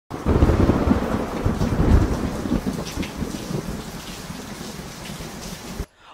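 Thunder rumbling over steady rain, loudest in the first two seconds and fading away, then cutting off abruptly just before speech begins.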